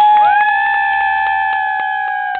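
Two high voices holding a long, steady 'woo' cheer together, the second joining about half a second in.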